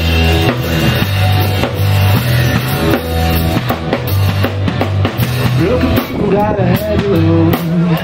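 Live rock band playing: drum kit with a steady bass drum beat under a strong bass line and electric guitar. A higher melodic line that bends in pitch comes in near the end.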